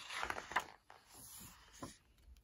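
A page of a picture book being turned by hand: a paper rustle in the first second, then fainter handling with a short tap near the end.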